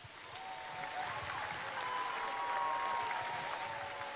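Audience applauding and cheering, fairly quiet, swelling and easing over a few seconds, with a few faint drawn-out tones over it.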